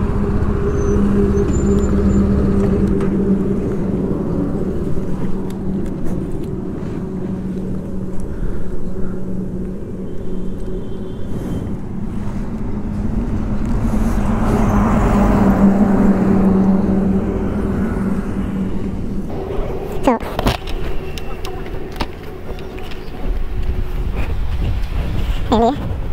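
Single-cylinder engine of a TVS Apache RR 310 motorcycle idling steadily at a standstill, then cut off about nineteen seconds in, followed by a few sharp clicks.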